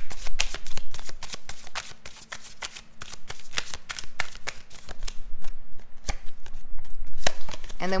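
A deck of tarot cards being shuffled by hand: a quick run of papery card snaps that thins out in the second half to a few single snaps.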